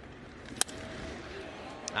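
Crack of a wooden baseball bat squarely hitting a pitch: one sharp strike about half a second in, putting the ball in the air to the outfield, over faint ballpark ambience.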